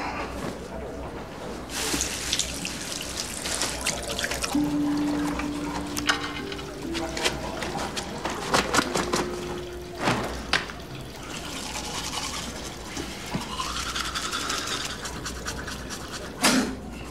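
Toothbrush scrubbing teeth and tongue in rough bursts, with water splashing at a washbasin.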